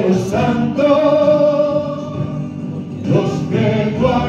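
Christian hymn music with singing, amplified through a microphone and loudspeaker. A long held note runs from about a second in to about three seconds.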